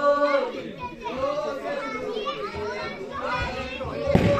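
Many voices overlapping: children and adults talking and calling out, with some notes drawn out.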